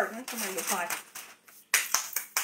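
Aluminium foil crinkling as it is handled, then hands clapping sharply, twice near the end.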